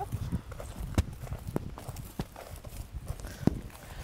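Footsteps on dry ground, a sharp step about every half second, over a low rumble of wind on the microphone.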